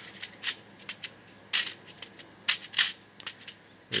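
Knife blade slitting the packing tape on a cardboard primer box: a few short scratchy strokes, the loudest about three seconds in.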